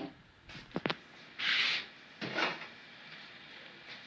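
Faint kitchen handling sounds: a few light clicks and a short scraping rub about a second and a half in, then another click.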